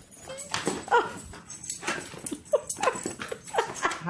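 A dog whining and whimpering in a rapid run of short, high cries, two to three a second.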